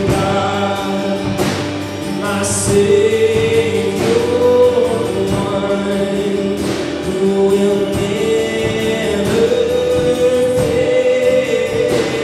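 Live worship song: a man singing long held notes over a strummed acoustic guitar.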